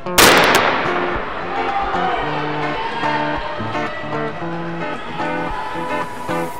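Background music with plucked guitar notes, marked by a loud sudden crash just after the start that rings out and fades over about a second.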